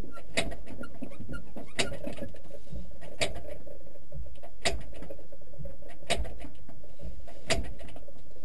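Jodel D112's engine turning over during a start attempt without catching: a steady low rumble with a sharp click about every second and a half. The start fails and is tried again.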